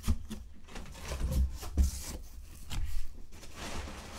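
Crumpled brown packing paper rustling and crinkling as it is pulled out of a cardboard shipping box, with a few dull knocks and bumps against the box.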